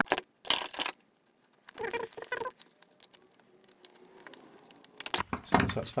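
Plastic outlet vent and flexible ducting being handled and pushed together by hand, in short bursts of scraping, rubbing and rustling with a quieter gap in the middle.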